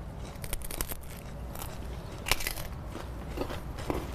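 Chips crunching as they are bitten and chewed: a run of small crackles about half a second in, then a sharper crunch a little past two seconds.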